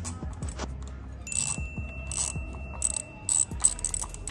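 Socket ratchet wrench clicking in short runs as it turns the bolts of a motorcycle's sprocket cover, with a few sharp metallic clinks.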